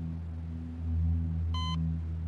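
A hospital heart monitor gives one short electronic beep near the end, part of a slow repeating pattern, over a steady low drone of background music.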